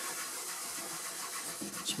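Cloth rag rubbing back and forth over the waxed wooden top of a radio cabinet, buffing off and smoothing out the dried wax: a steady scrubbing sound.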